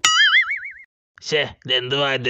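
Cartoon 'boing' sound effect: one wobbling tone that climbs in pitch for under a second. After a short gap, a dubbed voice speaks.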